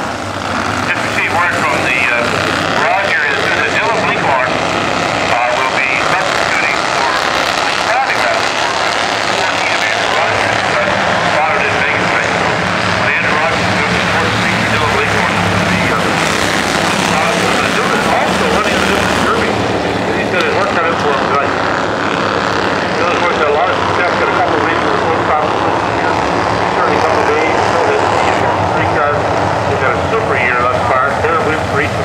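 A field of Bandolero race cars, each with a small single-cylinder Briggs & Stratton engine, buzzing around the track together, loud and steady.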